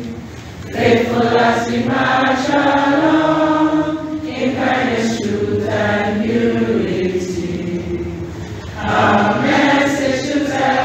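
A group of voices singing together, a slow song with long held notes. There is a brief dip just after the start, and the singing swells again about a second in and near the end.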